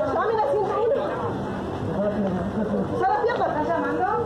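A few people talking and calling out over one another in Spanish, recorded on a mobile phone, so the sound is muffled and thin.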